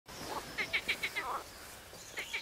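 A bird calling: a quick run of about five short high chirps, with a lower sliding call just after, over faint outdoor background.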